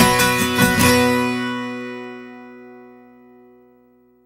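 Acoustic guitar music ending: a few last strummed chords in the first second, then the final chord rings and dies away over about three seconds, fading out just before the end.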